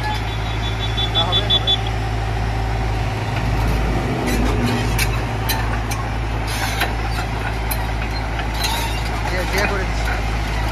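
JCB JS81 tracked excavator's diesel engine idling steadily with a constant low hum. A quick run of short high beeps sounds in the first two seconds.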